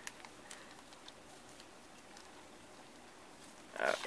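Faint rustling and a few soft ticks of thin magazine pages being turned over by hand.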